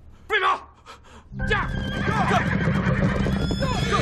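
A loud short cry about a third of a second in, then from about a second and a half in a group of horses galloping and whinnying, with riders shouting "jia!" to urge them on.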